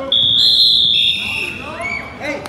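Referee's whistle: one long, loud, high blast that steps down a little in pitch partway through and stops about a second and a half in, halting the wrestling.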